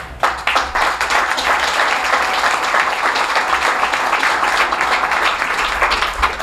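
Audience applauding, a dense patter of many hands clapping that breaks out suddenly and holds steady throughout.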